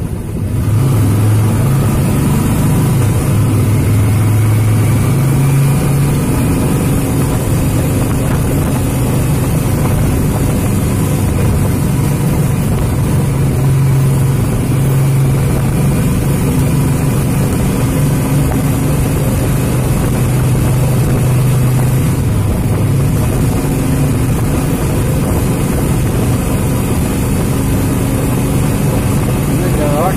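Motor vehicle driving through a road tunnel: steady engine and road noise with a low hum that shifts slightly in pitch now and then.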